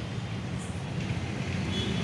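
A steady low mechanical hum with a faint background hiss, unchanging throughout.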